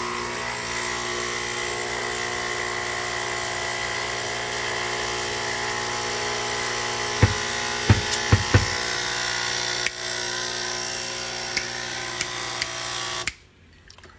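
A small electric appliance motor running at a steady speed, with a few sharp knocks about halfway through; it cuts off suddenly a little before the end.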